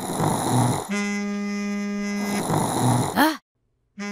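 A mobile phone ringing in a buzzy, held tone of about a second and a half, with a man snoring between the rings. Near the end comes a short rising-and-falling grunt, then the sound cuts off.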